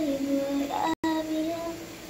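A background song: a high, childlike singing voice holding notes and stepping between them in a simple melody. The sound cuts out completely for a moment about a second in.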